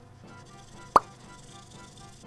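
A single short, sharp 'plop' sound effect about a second in, much louder than the soft background music beneath it.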